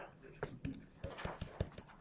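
Faint, irregular clicks and taps of a stylus on a tablet screen while a word is handwritten.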